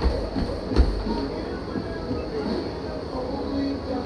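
Motorised treadmill running, its belt and motor giving a steady hum and rumble under a runner's footfalls, with one heavy thump just under a second in.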